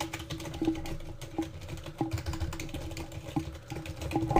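Computer keyboard typing: a run of irregular keystroke clicks over a steady low hum.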